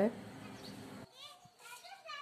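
A faint, high child's voice speaking or calling in the background, starting about a second in, over a low steady hiss.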